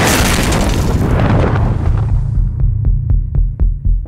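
Film-trailer sound design: a heavy boom hit for a superhero's landing, trailing into a deep rumble. From about two and a half seconds in, about six quick pulses come at roughly four a second, like a heartbeat.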